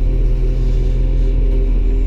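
Caterpillar 966H wheel loader's diesel engine running steadily, heard from inside the cab, with a constant low hum.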